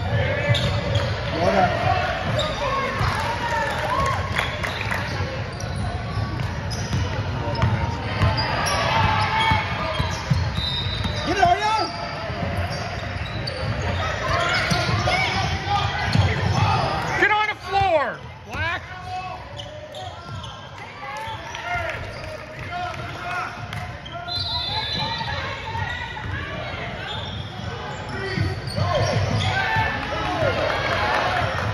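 A basketball dribbling on a hardwood gym floor during a game, with indistinct voices of players and spectators echoing through the large hall.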